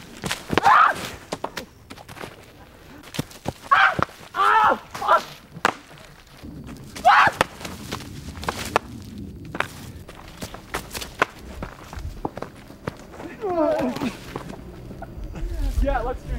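Men laughing and calling out in short bursts, with scattered sharp knocks in between.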